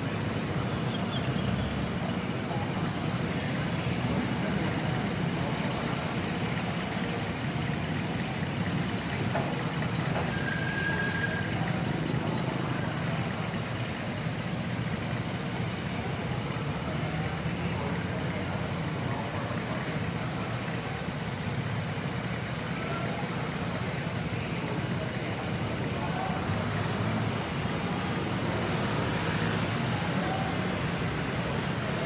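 Steady road traffic from the street below: engines and tyres of cars and buses making a continuous low rumble, with a brief high tone about a third of the way in.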